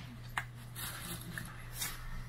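Handling noise from a phone being held: a finger rubbing and brushing against it, with a sharp click early on and brief scraping hisses about a second in and near the end, over a steady low hum inside a train carriage.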